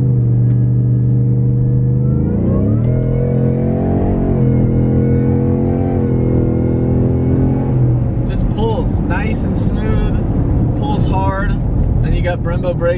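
Supercharged 5-litre Coyote V8 of a Ford Raptor pickup running under way, heard from inside the cab as a steady drone. Its pitch rises about two seconds in, dips briefly near four seconds, then holds until about eight seconds, when voices come over it.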